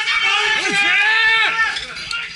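Loud shouting by several voices, high-pitched and strained, in long drawn-out calls that overlap and break off about every second, as in police officers yelling commands during a raid.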